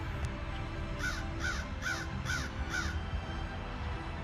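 A crow cawing five times in quick succession, starting about a second in, over quiet background music.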